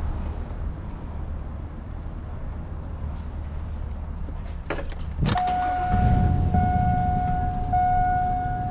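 Chevrolet pickup truck's engine idling with a steady low rumble, heard from inside the cab, getting louder about three-quarters of the way in. A couple of clicks come about five seconds in, and then a steady electronic tone sounds in long beeps with short breaks.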